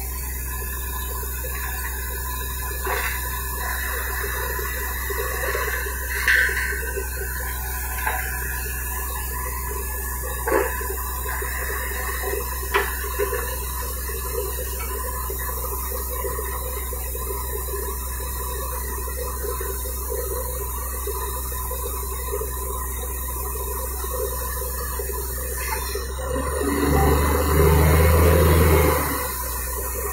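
Truck-mounted borewell drilling rig running with a steady low drone from its engine and air compressor, while water and mud are blown out of the bore. A few short knocks come through, and near the end there is a louder surge lasting about two seconds.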